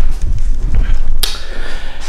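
Handling noise on the camera's microphone as it is picked up and carried: a loud low rumble with a sharper knock about a second in.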